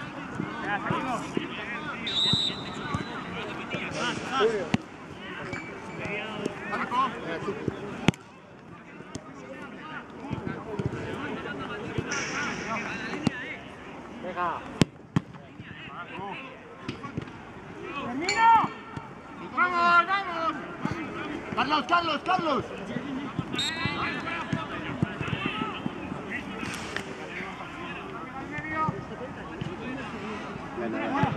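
Shouts and calls of footballers during play, with no clear words, over open-air background noise. A few sharp knocks of the ball being kicked stand out, the clearest about eight and fifteen seconds in.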